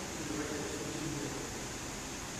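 Steady hiss of air conditioning, with no distinct racket or shuttle strikes.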